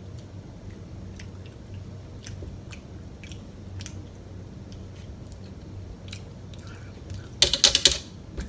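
A person chewing a forkful of food from a sloppy joe meal, with faint scattered mouth clicks over a low steady hum. A short, loud burst of rapid clicks comes near the end.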